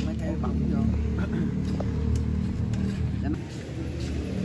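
Steady low rumble of a motor vehicle engine running nearby, with faint voices over it.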